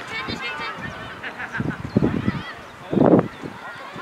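Distant high-pitched shouts and calls of young football players across the pitch, with one louder shout about three seconds in.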